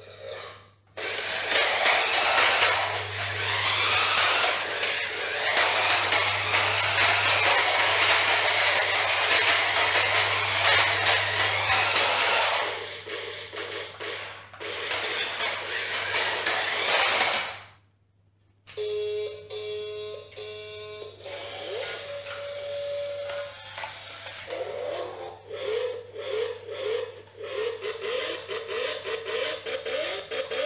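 VTech Switch & Go Dinos Turbo Bronco remote-control toy car whirring loudly as it runs, for about eleven seconds and then again briefly. After a short break come electronic beeps and a tinny tune from the toy's sound effects.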